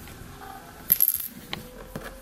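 Fingernails picking at a tiny plastic memory card on a wooden floor: a quick cluster of light clicks and scrapes about a second in, then a couple of single ticks, as the card is too small to pick up.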